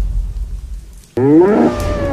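A low rumble fades away, then about halfway through a loud bull's bellow sound effect starts suddenly, rising and then falling in pitch over about a second.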